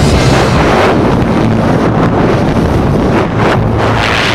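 Loud wind rushing over the camera microphone at the open door of a small plane in flight.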